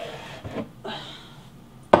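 A kitchen storage canister being lifted down from a cabinet shelf: light clicks and a brief rustle of handling, then a sharp knock near the end as it is set down on the countertop.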